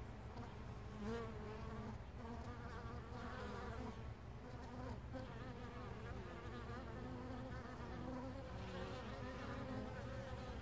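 Carniolan honey bees buzzing as they fly in and out of the hive entrance, several overlapping wingbeat hums wavering in pitch and swelling as individual bees pass close.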